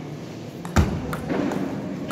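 Table tennis rally: the celluloid-type ball clicking off the rubber paddles and bouncing on the table in quick, irregular strokes, with one louder knock just under a second in.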